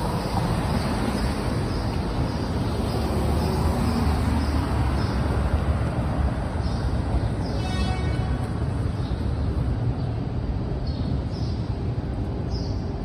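City street traffic: a steady low rumble of cars passing on a wet road, with a brief high-pitched sound about eight seconds in.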